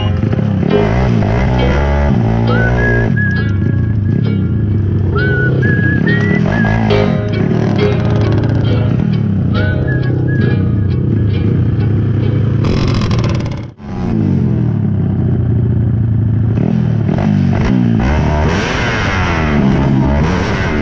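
Tuned Yamaha Crypton X135 four-stroke underbone motorcycle engines revving hard as they race, mixed with background music. The sound drops out briefly about two-thirds of the way through.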